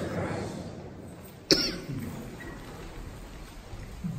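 A man coughs once, sharply, about one and a half seconds in.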